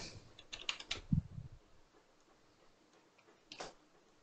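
Computer keyboard keys and mouse button clicks: a quick cluster of clicks with one dull knock in the first second and a half, then a single click about three and a half seconds in.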